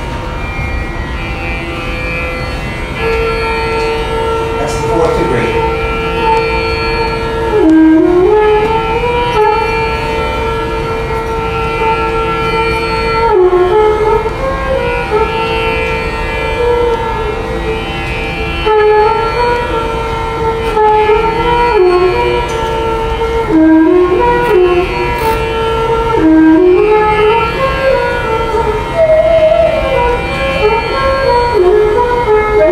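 Recorded Indian classical raga played back through loudspeakers: a melody that slides and bends between notes over steady held drone pitches. It illustrates a raga built on a sharp fourth that the speaker argues also needs a flat fifth.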